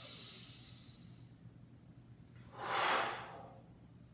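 A man's deliberate yoga breathing: a soft airy breath in the first second, then a single loud, forceful breath out about three seconds in, paced with the knee drawing toward the chin.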